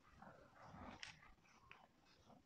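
Near silence, with faint rubbing of a whiteboard eraser wiping the board, a light tap about a second in and a brief squeak near the end.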